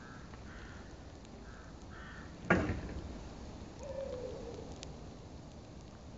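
Foot pedal of a large wheeled plastic waste container pressed, its metal pedal-and-rod linkage giving a single sharp clunk about halfway through as the lid lifts open.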